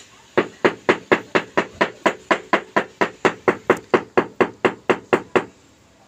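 Mallet tapping a large floor tile down into its mortar bed to level it: a quick, even run of knocks, about four a second, that stops shortly before the end.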